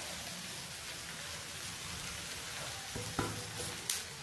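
Chopped vegetables sizzling steadily in a kadai on a gas stove, with a few short knocks about three seconds in and near the end.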